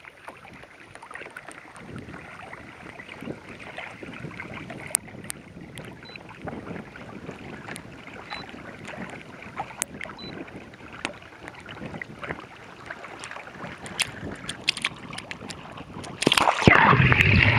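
Water rushing and lapping along the hull of a moving Hobie kayak, heard right at the waterline, with scattered sharp ticks and splashes throughout.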